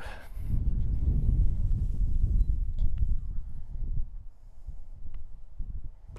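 Wind buffeting the microphone: an uneven low rumble, strongest for the first few seconds and then easing, with a few faint clicks.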